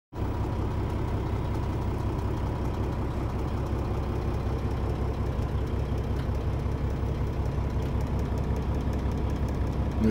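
Kenworth T680 semi-truck's diesel engine idling, a steady low rumble heard from inside the cab.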